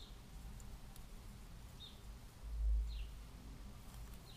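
A bird chirping faintly in the background: a few short chirps, each falling in pitch. A dull low thump comes about two and a half seconds in.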